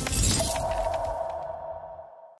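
Logo sting sound effect: a glassy shattering burst with a high sparkle, then one held ringing tone that fades away near the end.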